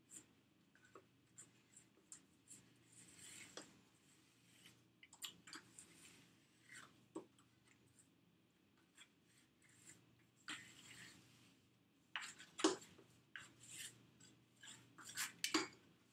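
Faint rubbing and light tapping of a plastic fondant smoother working fondant around the base of a cake on a turntable. There are short rubbing strokes about three and ten seconds in, and a cluster of louder clicks and knocks near the end.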